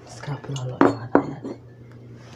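A few sharp clinks of hard objects, like dishes or cutlery being handled, two loud ones about a third of a second apart, over a steady low electrical hum.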